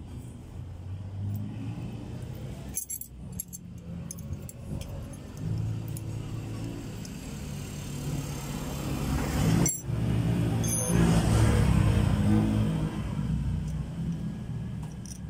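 A motor vehicle engine running, swelling louder about nine seconds in, with a few sharp metal clinks of a wrench on the clutch slave cylinder fittings.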